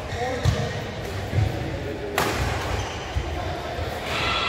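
Badminton play echoing in an indoor hall: dull thuds about half a second and a second and a half in, then one sharp crack of a racket striking a shuttlecock just after two seconds, ringing in the hall. Voices chatter from around the courts.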